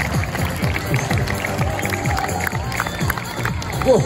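Music with a steady, thudding beat.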